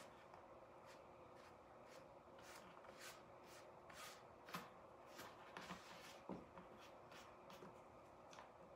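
Faint scratchy strokes of a paintbrush dragging thin acrylic paint across a stretched canvas, about two quick strokes a second, some louder than others.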